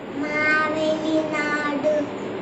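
A young child singing, holding two long, steady notes.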